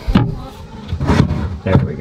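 Plastic toilet seat knocking and clattering against the plywood box of a bucket composting toilet as it is lifted off and handled: a sharp knock at the start, then a run of rattling knocks about a second in.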